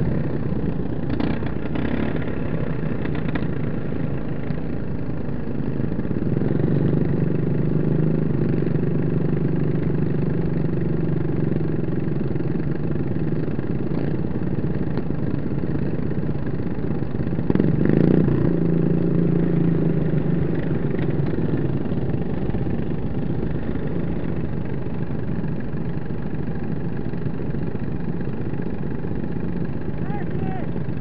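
Small single-cylinder engines of derby riding lawn mowers idling together, with a steady running note. The engine sound grows louder for a few seconds about a quarter of the way in and again a little past halfway, and there is a brief sharp knock just before the second swell.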